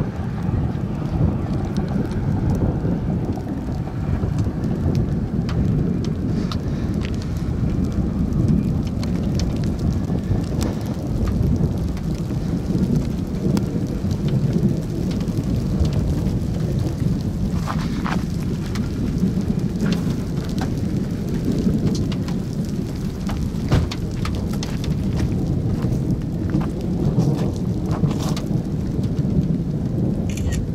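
Strong wind buffeting the microphone in a steady low rumble, with a few faint ticks scattered through it.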